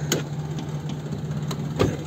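2010 Chevrolet Matiz Best engine idling with a steady low hum, with a sharp click shortly after the start and two more near the end as the hood is handled.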